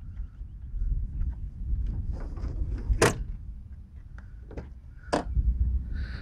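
A few sharp clicks and knocks over a low steady rumble, the loudest about three seconds in and another about five seconds in.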